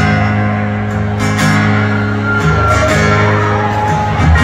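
Live country band playing a song's instrumental intro through a concert PA, led by guitar, with no singing yet. The band comes in all at once at the very start and holds long sustained chords, with a change of chord about halfway through.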